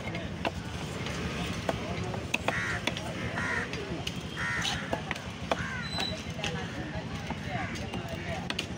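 Heavy cleaver chopping fish flesh on a wooden stump block, sharp knocks at an uneven pace. Crows caw three times near the middle over market chatter.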